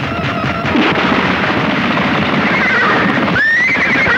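Horse whinnying twice in the second half, each call rising and then wavering down, over dense film background music.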